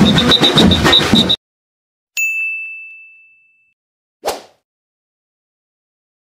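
Loud festival crowd noise cuts off abruptly about a second in. After a moment of silence comes a single bright ding, a sound-effect chime that fades away over about a second and a half, followed near the middle by a short swish.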